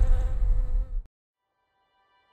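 Bees buzzing as a swarm over a deep low rumble, the whole sound cutting off abruptly about a second in.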